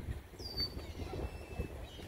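Wind buffeting the microphone in uneven gusts. About half a second in, a single high, thin bird call drops quickly in pitch and then holds briefly.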